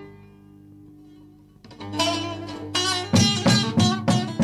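Recorded Turkish Barak folk song: held low notes sustain through a short lull, then a plucked string instrument comes back in about two seconds in, with sharp, strongly struck notes growing louder near the end.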